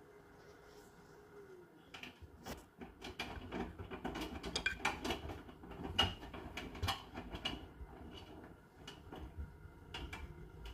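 Hotpoint NSWR843C washing machine during its final spin programme: the drum motor's hum drops away about a second and a half in, then wet laundry tumbles in the drum with irregular thuds and clicks for several seconds.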